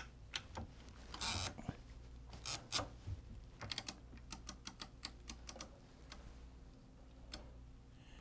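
Scattered light clicks and taps from hands handling a fishing reel and line on a linewinder while the line is threaded around the level wind and tied on, with a quicker run of clicks around the middle.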